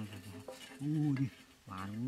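A man's low voice sounding two drawn-out syllables, about a second apart, in the same repeated chant as the "ya ya ya" just before. Between them there is faint scraping as the tin can is handled on the sand.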